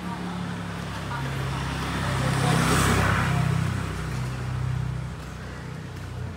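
A motor scooter approaching and passing close by with its engine running; the sound swells to its loudest about halfway through, then fades.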